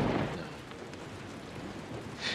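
Steady rain hiss, with a short swell at the start that fades within half a second.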